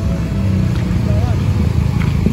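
Street traffic, with motor scooters and a car passing close by: a loud, steady low engine rumble.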